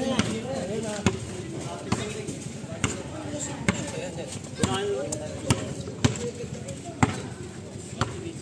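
Basketball dribbled on a concrete court, bouncing about once a second, with players' voices in the background.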